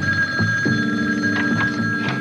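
Antique-style desk telephone ringing with a steady high ring that sets in abruptly.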